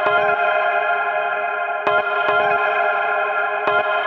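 Electronic dance music: a sustained, heavily effected chord held throughout, with a few sharp accents about two seconds in and again near the end.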